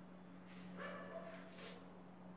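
Quiet room tone with a steady low hum, and a faint, brief whine-like pitched sound starting about half a second in and lasting about a second.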